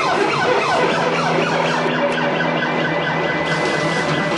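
Live band playing, with a repeated swooping, siren-like pitch glide over a held low note that drops out about three and a half seconds in.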